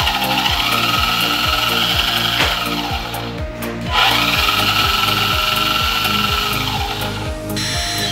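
Electric drive motor and gear train of a 1/16 metal RC mine dump truck whirring in two runs of about three seconds each, with a short break just after three seconds in, over background music with a steady beat.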